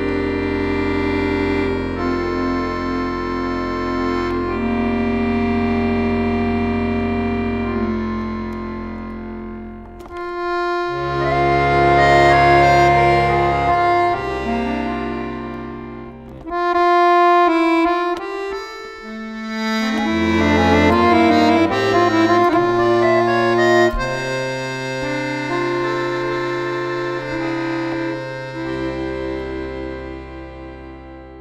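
Solo chromatic button accordion playing a slow piece: sustained chords and a melody over held bass notes, in phrases that swell and fall back. The music dips briefly about ten seconds in and again around sixteen seconds.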